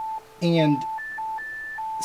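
Pure electronic tone from a Motorola Android tablet's image-sonification app, sounding the amount of blue in a space image under the fingertip. It holds a steady middle pitch, drops briefly to a lower one near the start, and twice jumps about an octave higher in the second half as the finger moves across the picture.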